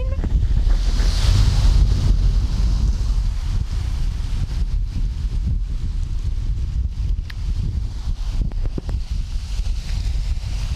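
Strong wind buffeting the camera's built-in microphone, a loud continuous rumble that is strongest in the first couple of seconds, with the wash of sea water underneath.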